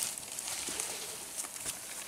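Footsteps and rustling through forest undergrowth and leaf litter: a few soft, irregular crunches and brushes of leaves.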